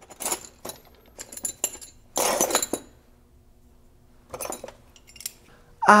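Thin stamped-steel wrenches clinking against each other as they are picked through in a metal tool drawer: scattered light clicks and ticks, with a denser rattle about two seconds in and a few more clinks near the end.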